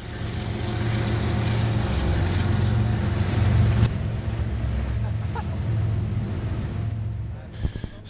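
Steady low rumble of a nearby vehicle engine running, with faint voices under it. It fades in at the start and drops away near the end.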